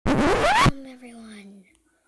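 A loud burst of scratchy rubbing noise lasting under a second, with a voice rising in pitch inside it. It is followed by a person's voice holding a long, slowly falling hum.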